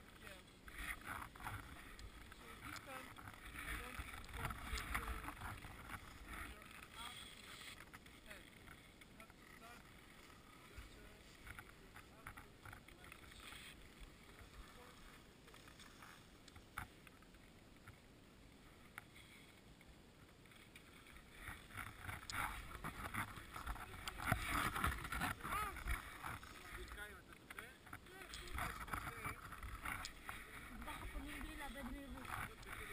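Skis scraping and hissing over packed snow, with wind rushing on the microphone, loudest and most uneven in the last third as the skier moves down the slope.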